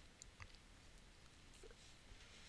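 Near silence: room tone with a few faint, brief ticks.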